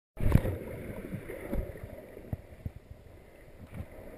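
Muffled underwater sound picked up by a camera in a waterproof housing: water moving around it, with a loud low knock near the start and several fainter dull knocks after it.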